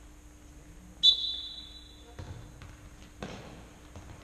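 A short, sharp referee's whistle blast about a second in, followed by the futsal ball thudding twice on the hard hall floor.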